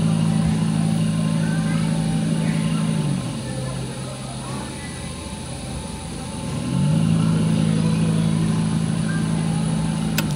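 Electric motor of a spin-art machine humming steadily, winding down to a stop about three seconds in and spinning back up a little before seven seconds, its hum falling and rising in pitch as it slows and speeds.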